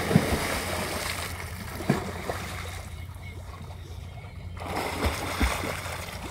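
A person plunging into a swimming pool with a loud splash at the start, followed by water sloshing and the splashes of swimming. There is another splash about two seconds in and several more near the end.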